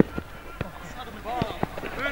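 A football being played on a grass pitch: a handful of short knocks from ball touches and challenges, with a player's brief shout in the second half.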